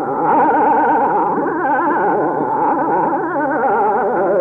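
Hindustani classical male voice singing a rapid oscillating passage, the pitch shaking up and down several times a second without a break, over a steady drone.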